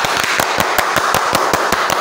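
Rapid hand clapping, about seven claps a second, over a steady rush of noise. It starts and stops abruptly.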